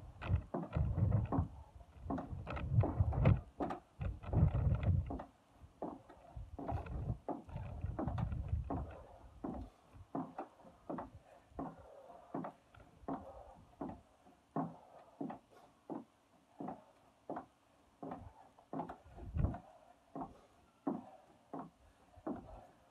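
Feet landing on wooden decking during jump lunges: a steady run of short thuds, about one and a half a second, with heavier low thumping in the first few seconds.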